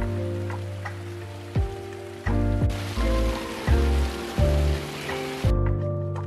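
Water of a small stream running and splashing, getting louder about halfway through and cutting off near the end, under background music with a deep bass beat.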